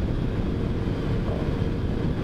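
Small motorcycle cruising at a steady pace, its engine a faint even drone under the rush of wind noise over the microphone.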